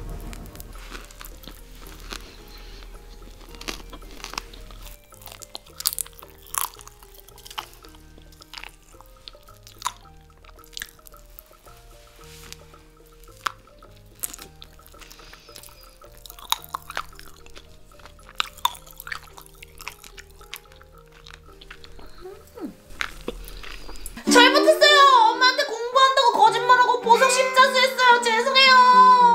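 Popping candy crackling in the mouth as a bite of cotton candy is chewed, with scattered sharp pops a few times a second over soft background music. About 24 seconds in, a loud wavering voice with music takes over.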